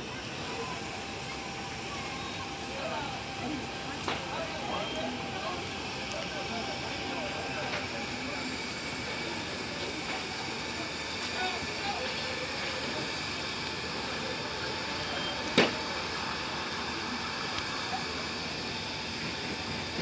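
A large house fire heard from high above: a steady rushing noise with faint distant voices and a few sharp cracks, one much louder about three-quarters of the way through.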